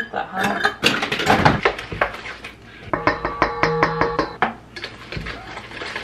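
A spatula knocking and scraping against a mixing bowl as the wet batter is mixed and sugar lumps are broken up, with a quick, even run of ringing taps in the middle.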